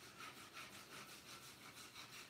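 Faint, quick back-and-forth scraping of a metal router bit depth gauge rubbing the back of an inkjet-printed paper sheet against a poplar board, burnishing the ink onto the wood.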